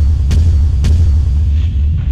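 Title-card sound effect: a deep, loud booming rumble, with two sharp hits in the first second.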